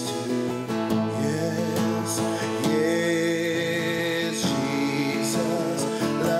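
A man singing to his own strummed acoustic guitar, holding some notes for a second or more.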